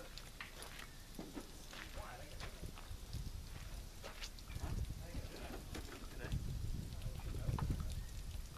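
Faint, muffled talk at a distance over an irregular low rumble that swells louder in the second half, with a few light clicks.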